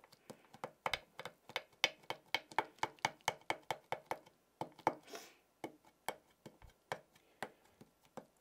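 Small Perfect Medium ink pad dabbed again and again onto a stencil over cardstock: a quick run of light taps, about five a second. The taps stop briefly with a short rustle about five seconds in, then carry on more sparsely.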